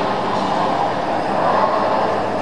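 A steady, loud rushing noise with no distinct tones or strikes, played back over loudspeakers in a large room.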